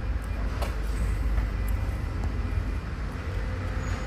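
A steady low background rumble with a few faint clicks.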